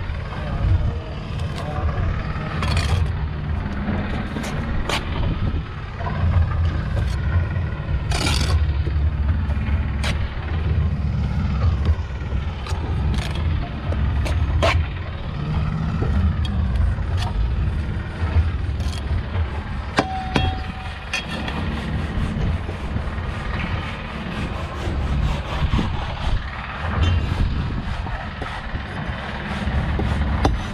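Bricklaying at a building site: a steel trowel scraping mortar and tapping bricks into place, with sharp knocks scattered through, over a steady low rumble.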